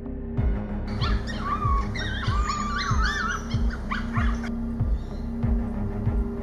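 Coyote pups whining in high, wavering cries from about a second in until about four and a half seconds in, over background music with a steady low beat.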